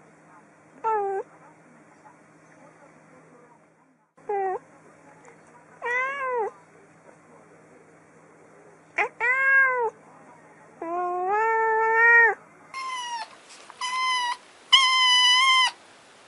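A calico cat meowing about six times, each meow rising then falling in pitch, the later ones drawn out longer. Near the end a kitten gives three higher-pitched meows in quick succession.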